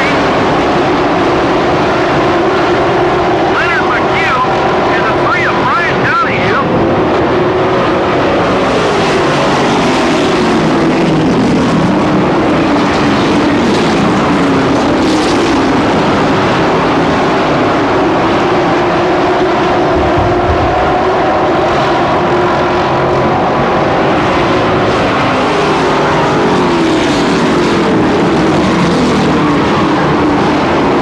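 A field of race trucks running at speed around a short oval track, the engines of the pack droning together with their pitch rising and falling as the trucks go through the turns and past.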